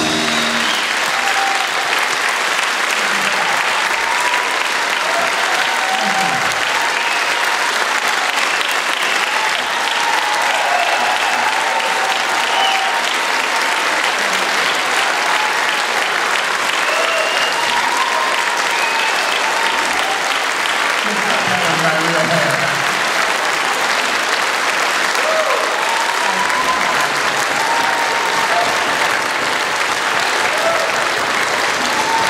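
Concert audience applauding steadily, with scattered shouts and cheers rising above the clapping.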